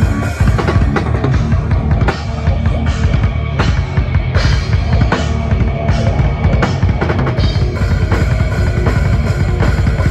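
A live rock band playing loudly, the drum kit up front with dense bass drum and sharp snare and cymbal hits over the band.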